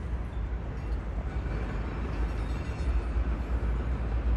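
Outdoor ambience over a large city construction site: a steady low rumble with an even hiss above it and no distinct single events.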